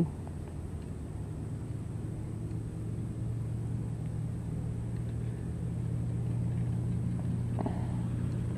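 Steady low drone of a distant motor, slowly growing louder.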